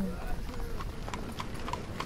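Horse hooves clip-clopping: a scatter of sharp knocks at uneven spacing, with faint voices in the background.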